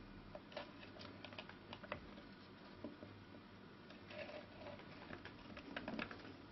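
Faint, scattered light ticks and scratches of a pencil point marking string spacings on a small sanded willow lyre bridge.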